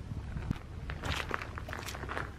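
Footsteps on dry, gravelly dirt: a run of uneven steps, thickest in the second half.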